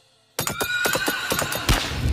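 After a brief silence, a sudden loud jumble of overlapping cartoon credit and logo soundtracks, full of sharp hits and clicks with a held high tone in the middle.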